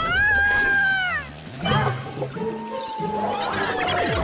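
Cartoon soundtrack: a long high-pitched cry that rises, holds and drops off about a second in, then a slow falling whistle-like tone over background music.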